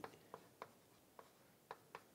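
Chalk writing on a blackboard: a handful of faint, sharp taps and clicks as the chalk strikes the board, irregularly spaced, over near silence.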